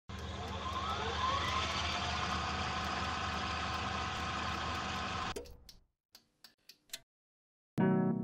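Old CRT television's static hiss over a steady electrical hum, with a couple of rising whines in the first second and a half. It cuts off about five seconds in, leaving a few clicks and a brief silence, and piano music starts near the end.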